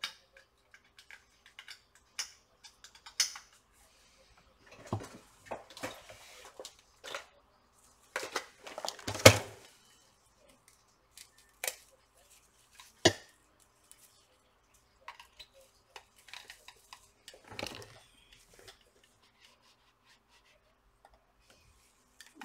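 Small hard objects handled on a workbench: scattered clicks, taps and short scrapes, with the loudest knock about nine seconds in and a few sharp clicks after it.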